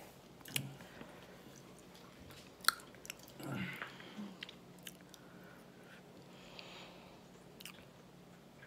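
Someone chewing crunchy chips: a few sharp, separate crunches over a quiet background, with a brief voiced hum about three and a half seconds in.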